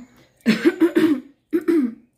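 A woman coughing and clearing her throat in two short bouts about a second apart, the second bout briefer.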